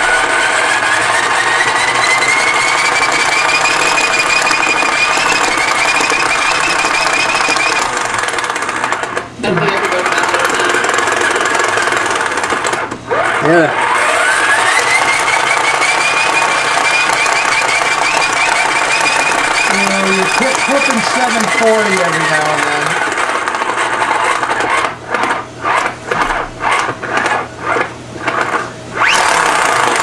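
Small hand crank generator whining as it is cranked as fast as it will go: the pitch rises as it spins up, then holds high. It breaks off briefly twice and spins up again, and near the end runs in short stop-start spurts.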